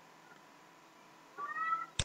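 Near silence, then a short, rising, high-pitched call about one and a half seconds in, followed by a single sharp click at the end, the click of a computer mouse.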